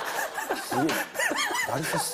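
Men chuckling and laughing, mixed with short bits of speech.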